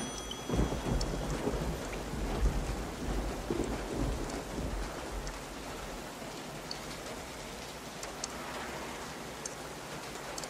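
Thunder rolling over steady heavy rain: a deep rumble, strongest in the first few seconds, that dies away by about halfway, leaving the even hiss of rain.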